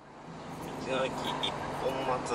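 Steady engine drone and road noise of a Suzuki Every kei van with its three-cylinder engine, heard from inside the cabin while driving, fading in at the start. A voice comes in over it about a second in.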